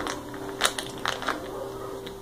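A plastic bag of dried spaghetti being handled, giving a few short, light crinkles.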